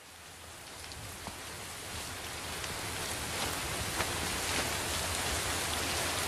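Steady rain-like hiss fading in at the start of a track, growing steadily louder, with a few faint sharp ticks standing out.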